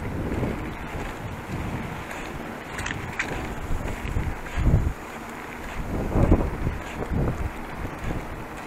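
Wind buffeting the microphone of a handlebar-mounted camera on a moving bicycle, a low rumble with louder gusts about four and a half and six seconds in. A couple of sharp clicks about three seconds in.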